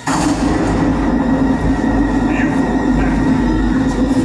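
A loud, steady low rumble played through a stage show's sound system, starting abruptly and holding level.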